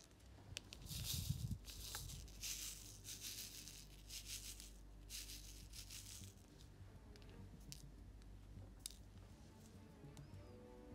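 Square resin diamond-painting drills rattling in a plastic tray as it is shaken, in a run of short scratchy bursts over the first several seconds, then only faint scattered clicks.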